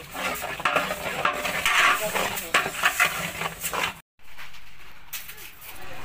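A long metal ladle scraping and stirring a thick yellow mixture in a large aluminium pot, in quick irregular strokes. After a sudden break about four seconds in, a steadier, quieter sound as a thin stream of oil is poured into the empty pot.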